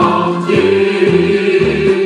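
A choir singing a Korean military marching song (gunga), holding one long note from about half a second in.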